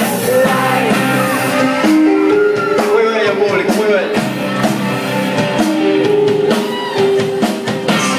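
Live rock band playing loud through a club PA: electric guitar and drum kit with a singer's voice, recorded on a phone in the crowd.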